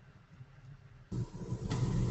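Background noise of a conference-call phone line: a faint hum, then about a second in a louder low rumble and hiss cut in suddenly and carry on as a caller's line opens.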